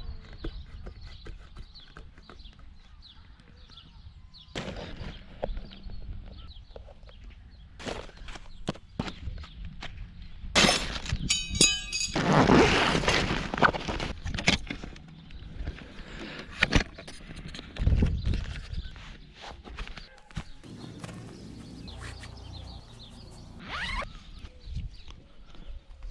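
Close-up handling of a sports bag and filming kit: a zip pulled near the middle, rustling of fabric and plastic, and knocks and clicks as a camera tripod is taken out and set up, with wind buffeting the microphone.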